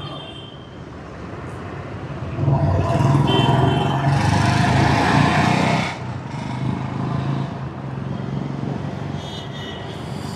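Motor vehicle noise: a steady low engine hum, with a vehicle passing close and loud from about two and a half seconds in until it drops away about six seconds in.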